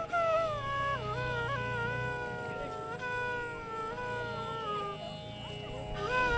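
Indian classical background music: a slow melody line that holds notes and slides between them over a steady drone.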